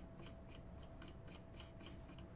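Faint, quick clicking, about four small clicks a second, from scrolling through pages on a computer, over a faint steady hum.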